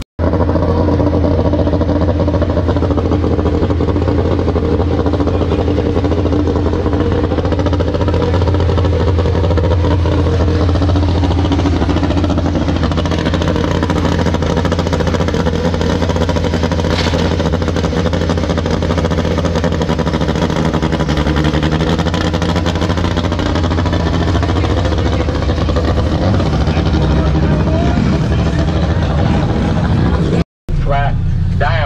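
A car engine running steadily, its pitch sagging slightly a few times.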